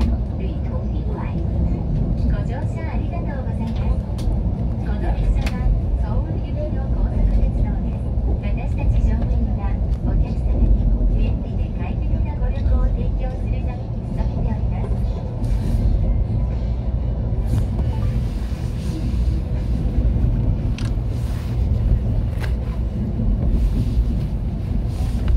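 Steady low rumble of a KTX-Cheongryong high-speed train's running gear, heard from inside the passenger cabin as the train runs through the rail yards, with scattered light clicks.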